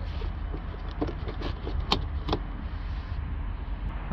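Rubber air intake hose being worked and pulled off the engine's intake by hand: rustling, rubbing and a few sharp plastic clicks, over a steady low rumble.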